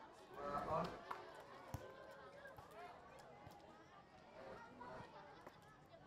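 Faint, distant voices of people around the pitch, loudest about half a second in, with a few short sharp knocks.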